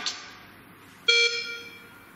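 Electronic beep from an ADM7000 biphasic defibrillator monitor: a single tone about a second in that starts sharply and fades away over about a second.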